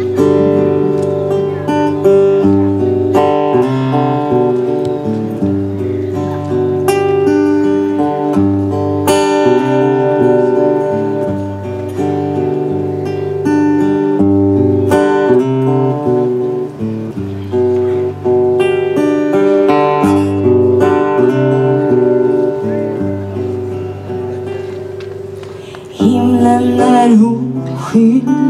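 Acoustic guitar playing a chord intro on its own, notes and chords changing steadily. A woman's singing voice comes in with the guitar about two seconds before the end.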